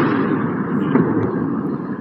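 Continuous loud rumble of Patriot interceptor missiles being fired in a night air-defence engagement, the launches and detonations blending into one sustained noise.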